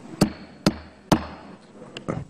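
Wooden gavel struck three times, about half a second apart, calling the hearing back to order.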